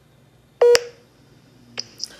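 A short electronic alert beep from a phone video call, a single buzzy tone lasting about a fifth of a second, sounding as the call loses its connection and tries to reconnect. A fainter short blip follows near the end.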